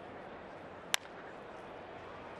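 A single sharp crack of a wooden bat hitting a pitched baseball, about a second in, over a steady hum of stadium crowd noise.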